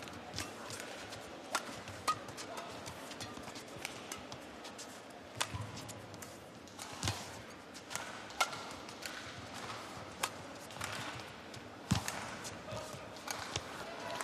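A badminton rally: sharp racket strikes on the shuttlecock at irregular intervals of a second or two, with short shoe squeaks and footfalls on the court over a low hum of the arena crowd.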